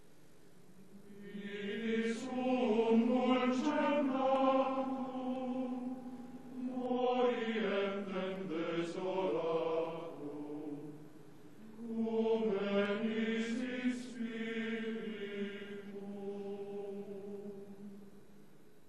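Male choir singing a slow chant in three long phrases with short breaks between them.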